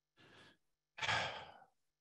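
A man breathing into a close microphone between sentences: a faint intake of breath, then a sighing exhale about a second in that lasts about half a second and fades.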